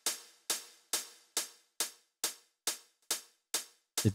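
A drum-machine closed hi-hat playing alone: a steady row of short, crisp ticks, a little over two a second, evenly spaced. The time-stretched hat loop now plays without the stray, swung-sounding extra hit that the time compression had added.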